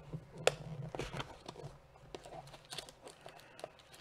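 Chrome baseball cards being handled and shuffled in the hands: a few light clicks of card stock, the sharpest about half a second in, and faint rustling.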